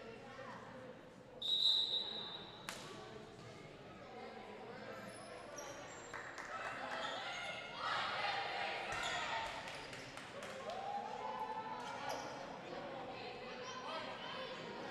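A referee's whistle blows once, short and shrill, a little over a second in, signalling the end of a timeout. Then young players' voices and chatter fill the echoing gym, with a basketball bouncing on the hardwood court.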